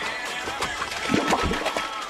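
Background music playing, with irregular clicks and a heavier knock about a second and a half in.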